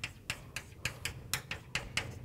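Chalk writing on a blackboard: a quick, uneven run of sharp taps and short scratches, about five a second.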